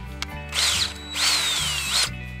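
Cordless drill driving a spiral garden auger into mulched soil to bore a couple-inch-deep planting hole, run in two bursts, the second longer. The motor's whine sags under load and rises again as the auger bites and frees.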